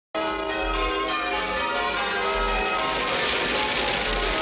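Church bells pealing, many ringing tones overlapping one another, with a rushing noise building near the end.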